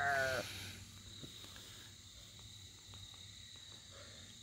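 A drawn-out, quavering vocal call that ends about half a second in, followed by faint outdoor background with a steady high insect trill and a few soft ticks.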